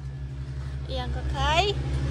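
A small passenger vehicle's engine runs with a low, pulsing rumble, heard from inside the cabin, growing louder as the vehicle pulls away.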